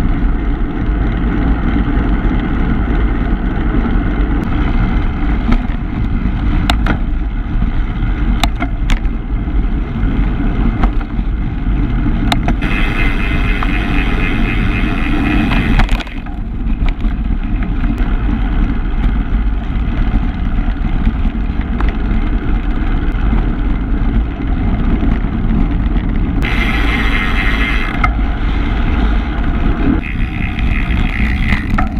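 Wind rumbling on the microphone of a camera carried on a moving bicycle, with tyre and road noise underneath. A few sharp clicks come through, and the hiss grows louder for a few seconds near the middle and again near the end.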